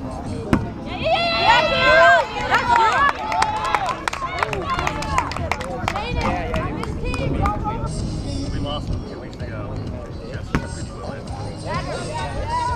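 A rubber kickball kicked once about half a second in, a single sharp thump, followed by players' high-pitched shouts and calls across the field, loudest between about one and three seconds in, with scattered calls after.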